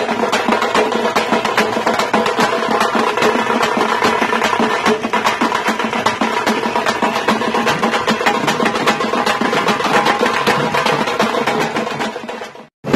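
A group of tamte frame drums beaten with sticks in a fast, dense, steady rhythm, the drum heads ringing.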